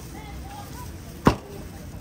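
A meat cleaver chopping once through cooked lamb onto a cutting board: a single sharp knock about a second and a quarter in.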